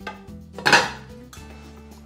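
Glass pan lid set down onto a metal frying pan: one loud clank about two-thirds of a second in, over background music.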